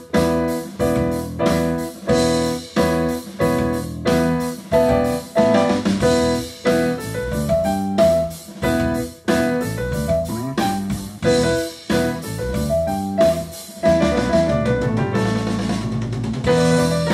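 Piano playing a tune in a steady beat, with sharp chord attacks about twice a second and a melody moving above them.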